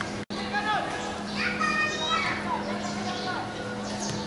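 Several young male voices shouting and calling out to one another during a football match, over a steady low hum. The sound drops out for an instant near the start.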